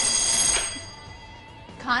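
Electronic game-show buzzer ringing, a bright ringing chord that fades out within the first second.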